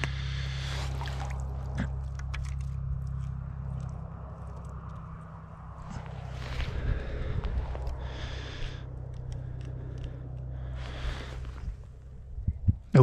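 Scrapes, crunches and light clicks from hands working a wooden ice-fishing tip-up and letting its line down through the ice hole, over a steady low hum.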